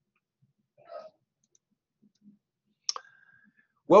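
A single sharp click just before three seconds in, from the slide being advanced, followed by a brief faint steady tone; a faint short sound comes about a second in. A man's voice begins at the very end.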